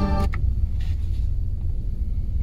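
Low steady rumble heard from inside a car as a double-stack intermodal freight train rolls past a level crossing. Background music cuts off about a quarter of a second in.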